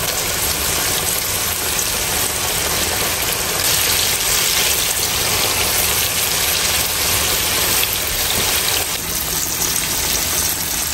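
Flour-dredged chicken pieces deep-frying in hot oil in a cast-iron skillet: a steady, dense sizzle of vigorously bubbling oil, a little louder in the middle.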